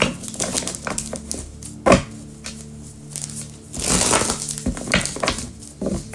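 A deck of tarot cards being shuffled by hand: a run of quick papery clicks and flicks, with a louder rush of card noise about four seconds in. Soft background music plays underneath.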